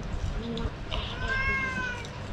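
A single meow-like call about a second in, rising then falling in pitch and lasting about a second, after a brief low call.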